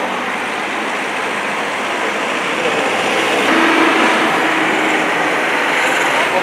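Steady vehicle noise from engines and road traffic, getting louder about two and a half seconds in, with a steady low hum for a couple of seconds in the middle.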